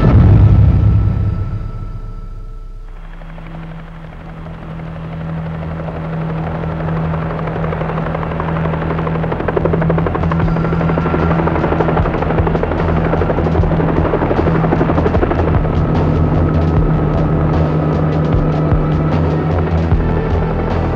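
A deep boom at the very start fades away over about three seconds, then a military helicopter's rotor comes in, its rapid chopping growing louder from about ten seconds in, with a sustained low music drone underneath.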